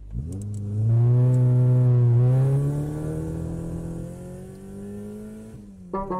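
Car engine revving up and accelerating away: its pitch climbs over the first second, it is loudest for the next second or so, then it fades and cuts off shortly before the end.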